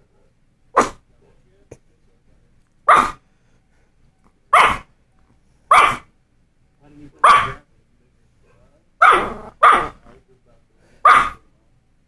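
Small Yorkshire terrier barking at the television: about eight sharp single barks spaced one to two seconds apart, two in quick succession past the middle.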